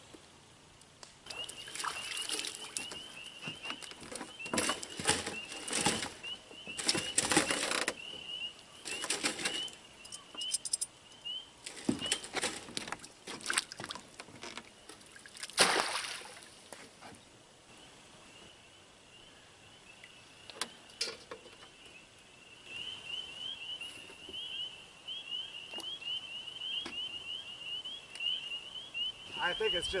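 Rustling and knocking from fish and tackle being handled, then a splash about halfway through as something is thrown into the lake. A high, rapidly pulsing trill runs in the background for the first third, drops out, and returns for the last third.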